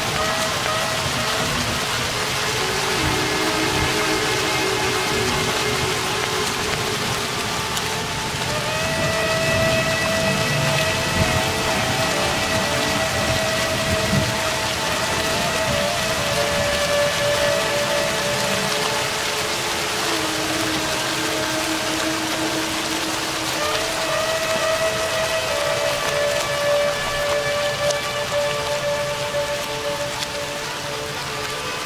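Steady heavy rain with a rumble of thunder near the middle, under long held woodwind notes.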